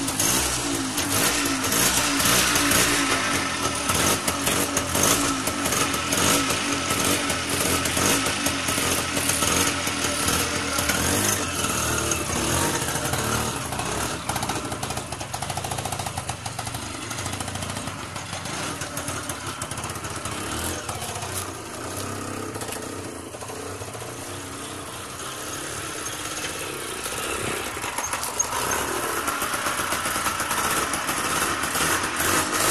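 Lambretta API 175 auto-rickshaw's single-cylinder two-stroke engine running steadily just after being started, a little quieter in the middle and louder again near the end.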